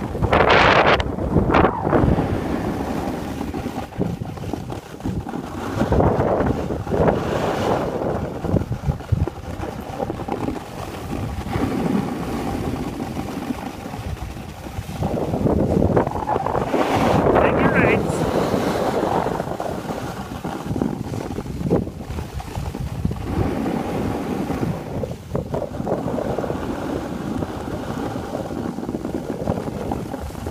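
Wind buffeting the microphone, mixed with the hiss and scrape of skis sliding over packed snow as the skier follows downhill. The noise swells and fades several times, loudest just after the start and again about halfway through.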